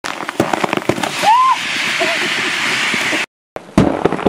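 Rescue life raft auto-inflating: loud, steady hiss of the compressed-gas inflation with a rapid run of sharp cracks and pops as the packed raft bursts out of its container. The sound cuts off abruptly, and after a short gap a single loud bang comes near the end.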